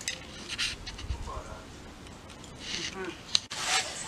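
Faint, indistinct voices at low level, with brief hissy breath-like noises and a sharp click a little over three seconds in.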